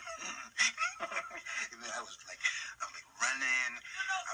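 A man talking animatedly, with a sustained, drawn-out vocal sound near the end.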